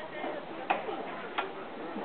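Sharp knocks repeating evenly, about two-thirds of a second apart, over a background of voices.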